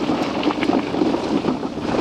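Wind buffeting the microphone over the rumble of bicycle tyres on a rough gravel track, with many small clicks and rattles from a rigid, unsuspended titanium gravel bike on the descent.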